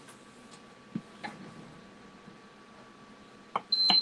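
A few light clicks and taps over quiet room tone, then near the end a timer starts beeping loudly in a high, steady tone, marking the end of the 15-minute time limit.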